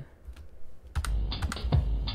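Soundtrack of an animated video starting to play through the computer: faint clicks at first, then from about a second in a deep low rumble with a quick run of sharp clicks and knocks.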